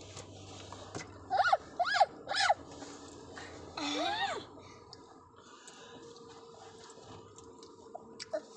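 A young child's high-pitched wordless vocal sounds: three short squeaks that rise and fall, about a second and a half in, then a longer rising call near four seconds, over a faint steady hum.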